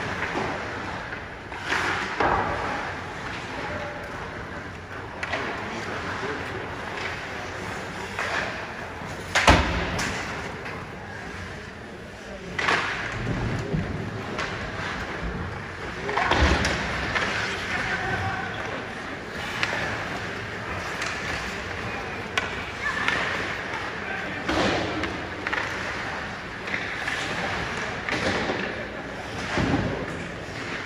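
Ice hockey play heard from the stands: skate blades scraping and carving the ice, with sharp knocks of sticks, puck and boards every few seconds, the loudest about a third of the way in, over a background of spectators talking.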